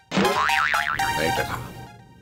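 Cartoon-style 'boing' sound effect with a fast wobbling, warbling pitch, starting suddenly and fading out near the end, laid over background music.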